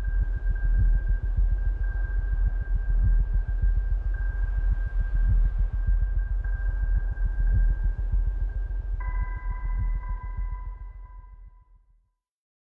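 Electronic logo sting: a deep pulsing rumble under a steady high tone, joined about nine seconds in by two more tones, one lower and one higher, all fading out near the end.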